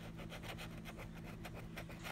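A metal key scratching the coating off a scratch-off lottery ticket in quick, even back-and-forth strokes, a faint scraping rasp.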